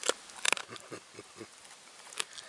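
German Shepherd eating a raw ostrich neck: a sharp crunch at the start and a quick cluster of crunches about half a second in, then a few soft mouth smacks.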